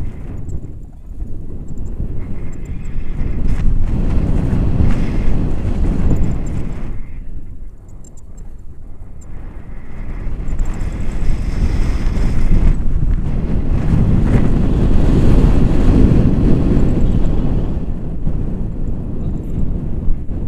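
Wind buffeting a camera microphone in paraglider flight: a low rushing rumble that swells and eases, drops away briefly about halfway through, then builds to its loudest later on.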